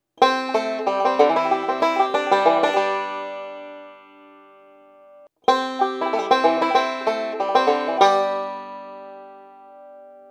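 Five-string banjo picked with fingerpicks, playing two short rolling backup licks over a C chord, with hammer-ons and a pull-off. Each lick is a quick run of notes that rings out and fades. The second starts after a short break about five seconds in.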